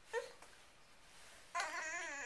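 A toddler fussing: a brief whimper near the start, then a wavering whine that starts about one and a half seconds in and builds toward crying.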